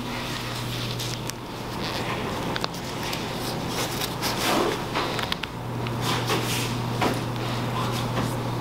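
Soft rubbery scuffing and peeling of a flexible silicone soap mold being worked off a slab of charcoal soap, in short irregular bursts over a steady low hum.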